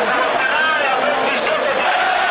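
A celebrating football crowd: many voices talking and shouting at once over a steady, dense crowd noise, with no single voice standing out.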